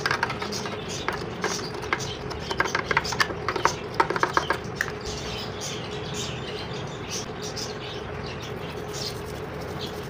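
Quick clicks and scrapes of hands working inside the plastic motor base of a Panasonic juicer during cleaning, busiest over the first half, over a faint steady hum.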